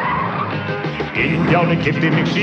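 Cartoon soundtrack music with a sung word, mixed with a vehicle tyre-skid screech sound effect.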